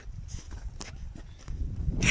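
Low rumbling outdoor background noise, such as wind on the microphone, with a couple of faint clicks.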